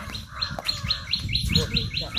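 A bird calling: a rapid series of about ten short, falling notes, some five a second.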